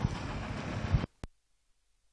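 Steady noisy background ambience with no clear voice or tone, which cuts off abruptly about a second in, followed by a single brief click and then silence.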